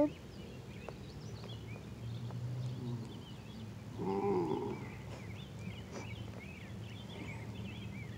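Birds chirping in the background, with a person's brief low groan about four seconds in.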